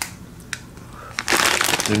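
Plastic instant-ramen packet crinkling in quick crackles as it is handled, starting a little past halfway; a couple of light clicks come before it.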